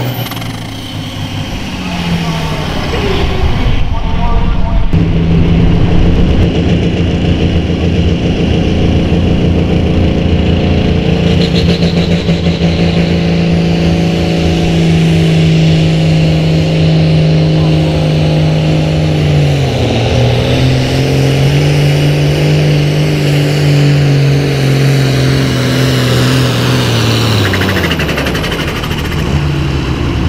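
Diesel pro stock pulling tractor engine under full load dragging a weight-transfer sled: a loud, steady engine note that drops in pitch about two-thirds of the way through as the engine is pulled down by the sled, holds, then falls away near the end. In the first seconds another pulling tractor's engine winds down at the end of its run.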